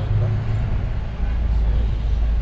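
Steady low rumble of road traffic from a nearby main road; it grows deeper and louder about a second in.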